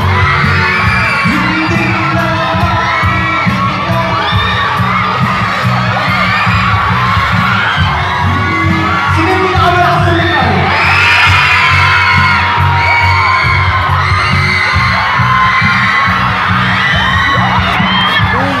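Live pop performance over a backing track with a steady bass beat, a male singer on a microphone, and a crowd of fans shouting and cheering over it; the crowd noise swells about ten seconds in.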